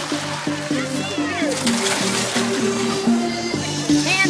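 Music with steady held notes, over voices and water splashing on a wet tarp slide.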